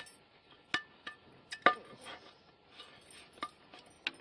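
Sharp metallic clinks and taps, a few scattered over the seconds, from a screwdriver prising a stainless steel pot handle off a cast aluminium pan whose aluminium rivets have been ground off.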